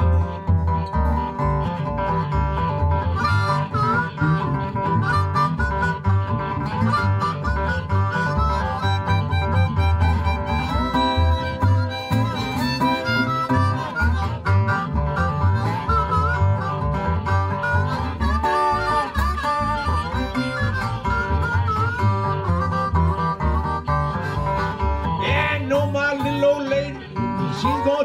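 Blues harmonica, cupped against a vocal microphone, playing a solo with bent, sliding notes over a steady acoustic guitar rhythm in open G tuning: the instrumental break of a Delta blues song.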